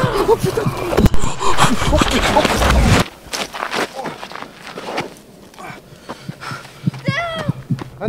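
A handheld camera being jostled amid scuffling and running footsteps, loud and chaotic for about three seconds, then suddenly quieter with scattered steps and rustling. A short high-pitched cry comes near the end.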